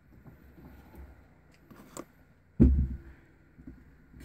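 Faint handling noises, soft rustles and a small click, as needle and thread are picked up off the table, with one short, dull thump a little past halfway.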